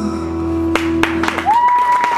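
The singers' final held note ends about a second in, and clapping and a long high cheering call from the audience break out as the song finishes.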